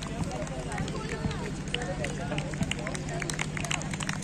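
Indistinct chatter of several people talking at once, over a steady low hum, with scattered sharp clicks throughout.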